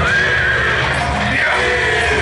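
A horse whinnying: one long, wavering high call over loud background music.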